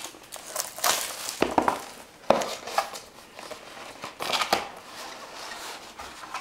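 Packaging crinkling and rustling as a sealed trading-card box is unwrapped and opened, with scattered sharp crackles and a few light knocks of cardboard.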